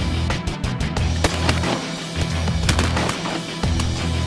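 Heavy-metal-style rock soundtrack music with a pounding low beat. Through it come a few sharp cracks, about a second in and again just before three seconds in.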